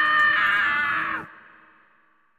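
Scrat, the cartoon sabre-toothed squirrel, letting out one long high shriek that holds steady and cuts off abruptly a little over a second in, followed by a brief faint echo.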